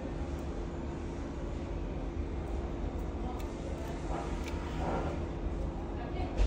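Steady background hum and hiss with a constant low tone, and a few faint clicks about three seconds in.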